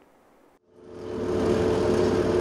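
A steady motor-like drone with a low hum fades in under a second in, after a brief silence, and holds level.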